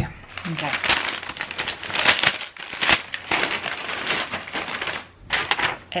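Brown paper bag crinkling and rustling as it is opened and rummaged through, a dense run of crackles lasting about four seconds.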